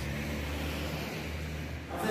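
A vehicle engine running with a low, steady hum under outdoor background noise.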